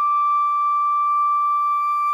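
Solo flute holding one long, steady high note, a clear, pure tone that does not waver.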